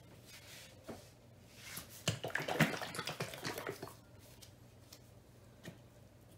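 A burst of knocks and clattering lasting about two seconds, with a single click before and after: tools being handled on a work table, a butane torch set down and a plastic paint bottle picked up. A faint low hum runs underneath.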